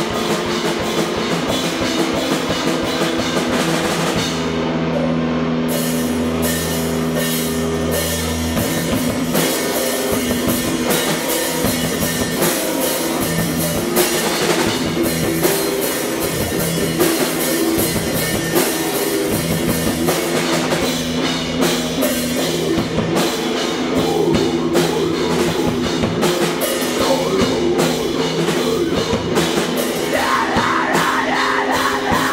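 A live screamo band playing loud: electric guitar and a drum kit, with drum strikes cutting through dense guitar and low held notes for a few seconds near the start.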